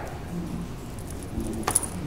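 Quiet room tone, then a short, light clink of small hard objects about one and a half seconds in.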